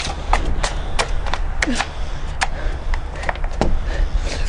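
Irregular sharp knocks and clicks, about a dozen, over a steady low rumble, as a person in a padded costume strains and bumps against a metal-barred front door; a short falling grunt comes about one and a half seconds in.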